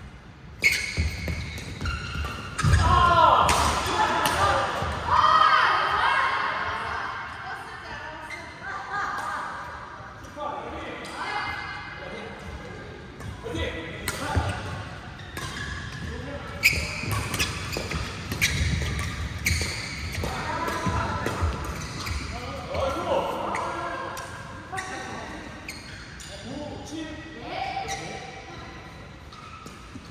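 Badminton doubles rally: repeated sharp strikes of rackets on the shuttlecock, with footfalls on the court floor, echoing in a large hall.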